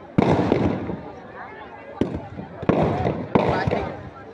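Firecrackers packed inside a burning Ravan effigy going off: a loud bang just after the start that dies away over about a second, a sharp crack about halfway, then two more bangs in the second half.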